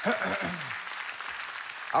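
Congregation applauding steadily, a sustained crowd clapping answering the pastor's call to applaud.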